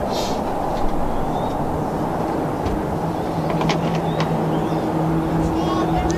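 Pitch-side ambience of a football match: a steady low rumble with faint distant voices from the pitch and a few short knocks.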